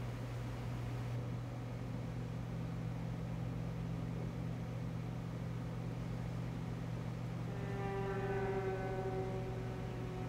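Ambient sound-design drone: a low, steady hum, joined about seven and a half seconds in by a higher tone with overtones that slowly sinks in pitch.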